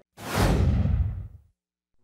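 Whoosh sound effect for a TV news logo transition: a single rush of noise that swells within half a second and fades away, the higher part dying first, over a little more than a second.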